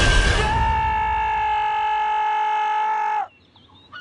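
Trailer sound design: a heavy hit, then a single high note held dead steady for about three seconds that cuts off abruptly, leaving near quiet.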